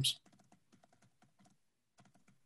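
Faint, irregular clicking of a computer keyboard being typed on.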